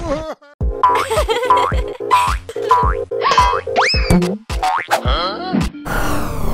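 Cartoon soundtrack music with a run of short springy boing sound effects about every half second over a held tone, a sharp upward-sliding effect about four seconds in, and a sweeping effect starting near the end.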